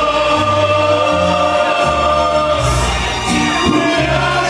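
A male mariachi singer singing into a microphone, holding a long note through the first couple of seconds over amplified backing music with a moving bass line.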